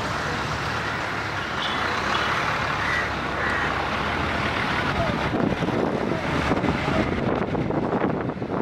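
Bus station ambience: diesel bus engines running, with people talking in the background. The engine noise grows somewhat louder and rougher in the second half.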